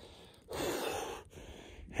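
A man's deliberate, heavy breathing through the cold shock of an ice-water plunge: one long, noisy breath from about half a second in, then a shorter, fainter one near the end.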